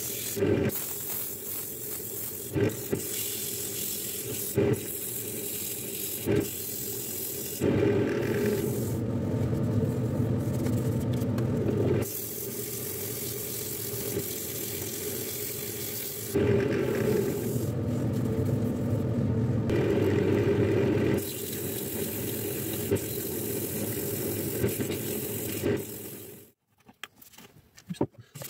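Sandpaper held by hand against a wooden bowl of ash, mahogany and walnut spinning on a wood lathe: a steady scratchy hiss over the lathe motor's hum. The sound grows louder for two long stretches in the middle, and there are a few short knocks in the first several seconds.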